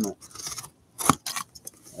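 A blade cutting through the seal sticker on a cardboard box: a few short scraping strokes, with a sharper, louder cut about a second in and small clicks after.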